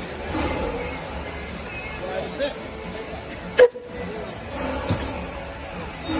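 Narrow-gauge NA-class steam tank locomotive 8A standing with steam hissing from it, under the chatter of people nearby. A single sharp knock about three and a half seconds in is the loudest sound.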